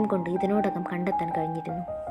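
A woman's voice narrating over soft background music with held, bell-like notes.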